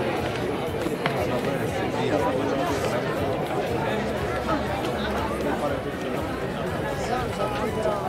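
Spectators chatting around the track: many overlapping voices in a steady murmur, with no clear words.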